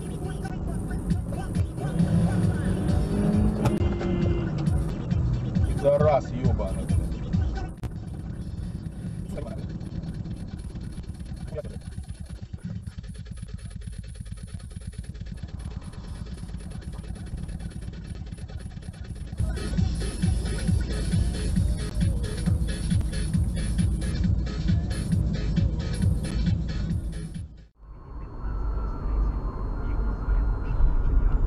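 Low engine and road rumble inside a moving car, with music and indistinct voices over it. The sound changes abruptly a few times and cuts out for an instant near the end, where the footage jumps between dashcam recordings.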